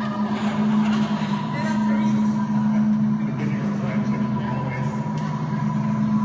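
A group of voices holding a sustained drone on two low notes, with a thin steady higher tone above it and some voice sounds over the top, in a large echoing hall.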